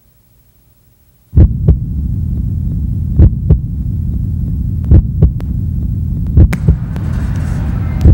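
Sound track of a brand intro animation: a low rumbling drone that cuts in suddenly about a second in, with pairs of deep thumps about every second and a half and a rising whoosh near the end.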